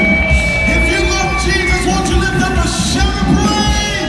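Live amplified singing with a backing band, heard through the hall's PA, with a long held note over the first couple of seconds.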